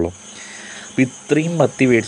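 A person talking, with a short pause in the first second, over a steady high-pitched background tone that runs on under the voice.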